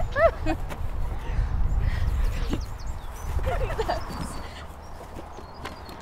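Short excited squeals and laughter from friends in a group hug, near the start and again about three and a half seconds in, over a low rumble that fades after about four seconds.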